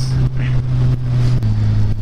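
Suzuki GSX-R sportbike's inline-four engine running steadily at cruising speed, with wind rumble. The engine note drops a step about one and a half seconds in as the revs ease.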